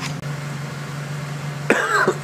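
A 2003 Ford Focus station wagon's engine idling steadily, a low hum, running to charge a battery that had gone flat. A person coughs near the end.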